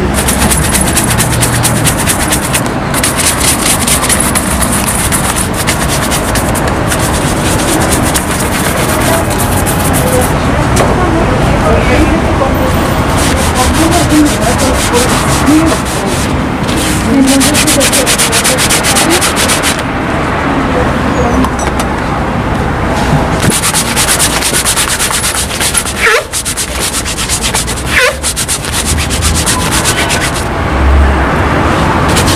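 A cloth rubbed rapidly back and forth over a black leather shoe, buffing layers of wax polish to a shine: a continuous rough swishing of quick strokes.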